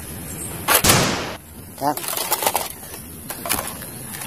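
Toy soft-bullet blaster fired once, about a second in: a single sharp shot with a short fading tail.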